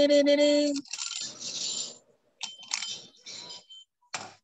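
A timer alarm sounding a loud, steady, low buzzing tone that cuts off suddenly under a second in, followed by faint scattered clatter and rattling.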